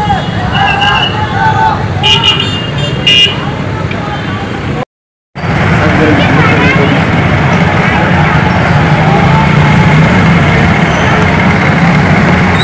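Street traffic with a few short vehicle horn toots over shouting voices. After a brief cut about five seconds in, a steady, dense noise of a large crowd of voices.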